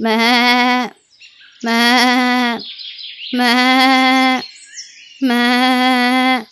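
A goat bleating four times in a row. Each bleat lasts about a second, with a slightly wavering pitch.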